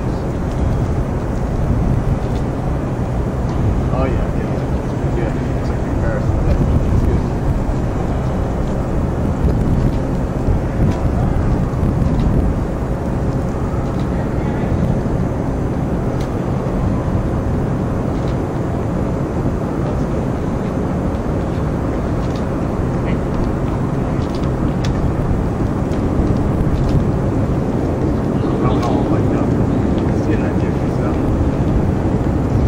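Steady low outdoor rumble, with faint voices now and then.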